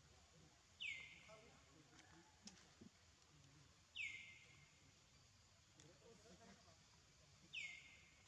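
A bird calling three times, about three seconds apart. Each call is a quick whistle that sweeps down in pitch and then levels off briefly.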